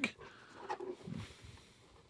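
Faint handling of a cardboard advent calendar as a hand reaches in among its doors: soft rustling, a light click, and a short low sound about a second in. It goes almost silent after about a second and a half.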